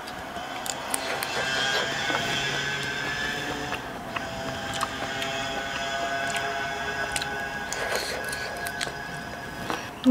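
Soft background music of held notes, with scattered small clicks from eating.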